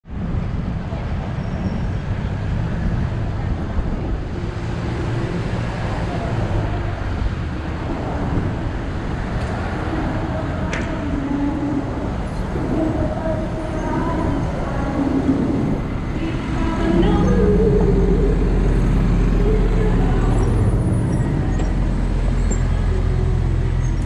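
Busy city-street traffic heard from a bicycle: the engines of buses, taxis and vans running around it. The sound grows louder and deeper about two-thirds of the way through, as the bicycle rides close alongside a double-decker bus.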